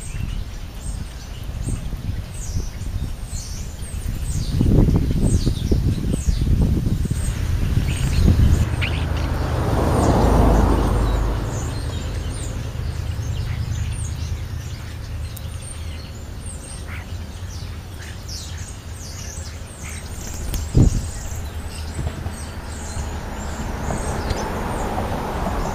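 Birds chirping in many short, high calls, over a low rumble that swells and fades in the middle. A single sharp knock comes near the end.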